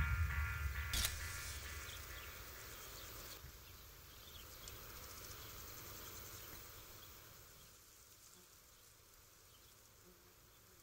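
The last notes of guitar music die away, leaving faint evening countryside ambience with a few insect chirps. It fades to near silence near the end.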